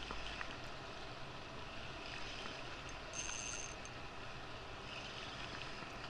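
Small waves lapping against a kayak's hull, with light wind, steady and low. A brief faint high whine a little past halfway.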